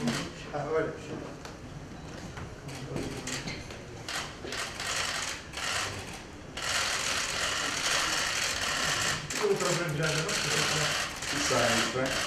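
Many camera shutters clicking in rapid bursts, becoming a dense clatter about six and a half seconds in, with a few voices in between.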